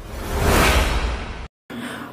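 A whoosh sound effect from an intro animation: a swell of noise with a low rumble beneath that rises to a peak about half a second in, then fades. It cuts off abruptly about one and a half seconds in.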